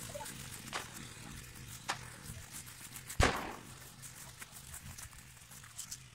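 A few sharp knocks over rustling and movement in grass, the loudest a short bang with a brief low rumble about three seconds in.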